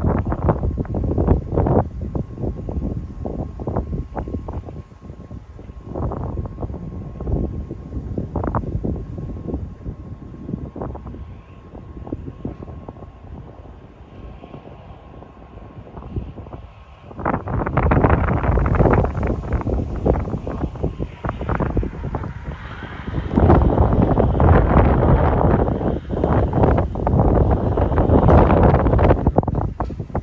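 Wind buffeting the microphone in irregular gusts, growing much louder a little over halfway through and staying strong to the end.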